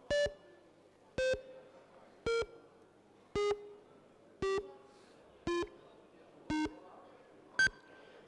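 Electronic voting system in a parliament chamber sounding its vote countdown: eight short beeps about a second apart, each one a little lower in pitch than the one before, then a short higher beep near the end that marks the close of the vote.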